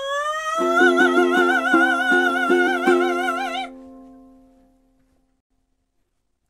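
A held sung note with a wavering vibrato over a run of quick ukulele strums, the last notes of the song. The voice stops, and the final ukulele chord rings on and fades away about five seconds in.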